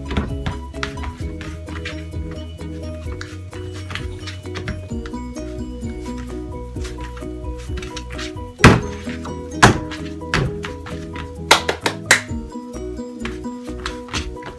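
Background music plays throughout, with a handful of sharp thumps about eight to twelve seconds in, the first the loudest, from soft churro dough being pressed and kneaded by hand on a board.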